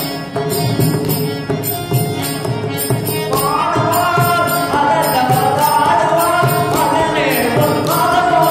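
Tamil devotional bhajan: harmonium drone and melody with mridangam drum strokes and a steady metallic jingling beat keeping time. A male voice comes in singing about three seconds in.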